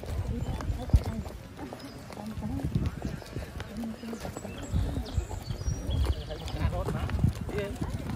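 Footsteps of several people walking on wet asphalt, a steady run of low thuds, with voices talking quietly. A sharp knock about a second in.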